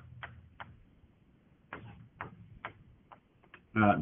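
Handwriting on a board: a series of short, separate taps and scratches from the writing tool as words are written out.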